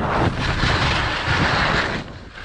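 Skis sliding and turning on packed snow, a steady hiss, mixed with a low rumble of wind buffeting the camera microphone.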